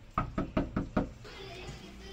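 A fist knocking on a house's front door: five quick, evenly spaced knocks in under a second.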